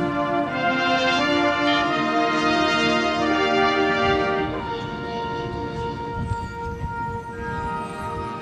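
Marching band brass playing loud, sustained chords that drop to a softer passage about halfway through, with one steady high note held over the quieter part.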